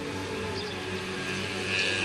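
A steady, low engine hum, like a vehicle running or passing at a distance, under outdoor background noise.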